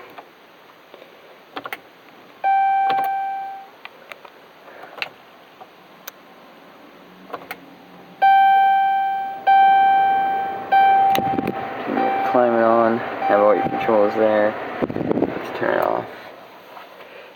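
Dashboard warning chime ringing one clear tone, then four more at the same pitch about a second and a quarter apart, each fading as it rings. Near the end comes a few seconds of a wavering voice from the car's audio.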